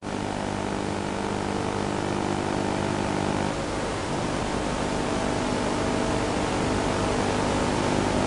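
Steady hiss with a buzzing electrical hum underneath, cutting in suddenly at the start. The hum's lower tones shift about three and a half seconds in.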